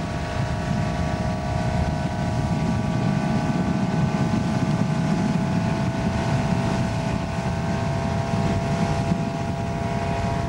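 Tow boat's engine running steadily at towing speed, an even drone with a low rumble beneath, with wind buffeting the microphone.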